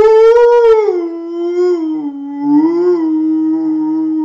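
A man's singing voice holding one long 'oo' vowel with no break, like a howl. It rises to a high note, slides down, swells once more about three seconds in, then settles on a steady lower note.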